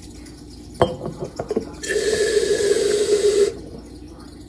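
Reddi-wip aerosol can of whipped cream spraying into a glass jar: a few clicks and knocks from handling the can about a second in, then a steady hissing spray of nearly two seconds that cuts off suddenly.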